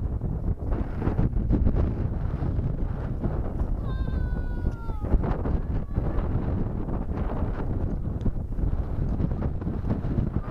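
Wind buffeting the microphone, making a steady rumble. About four seconds in, a short high call glides down in pitch for about a second.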